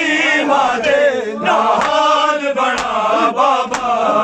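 A group of men chanting a Punjabi noha lament in unison. Open-handed chest-beating slaps (matam) land about once a second in the second half.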